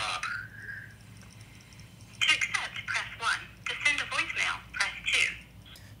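Google Voice's recorded call announcement playing through a smartphone's small speaker: a thin, tinny synthetic voice telling that the incoming call is coming through the Google Voice number. It is preceded by a short tone right at the start.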